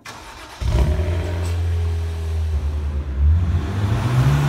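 A BMW car's engine starting: about half a second of cranking, then it catches and runs loudly with a steady low note inside a concrete parking garage. Near the end the pitch rises as the engine revs.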